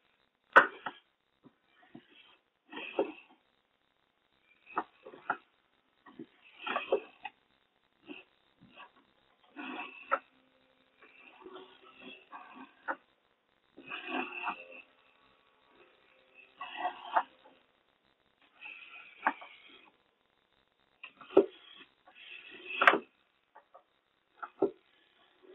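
Small plastic construction-kit caterpillar robot crawling: its plastic plates and linkage knock and scrape on the tabletop in short irregular clicks, one every second or two, with a faint motor hum now and then.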